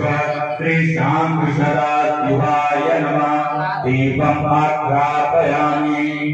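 A male priest chanting Sanskrit mantras into a handheld microphone, in long held notes with brief breaks for breath about a second in and near four seconds.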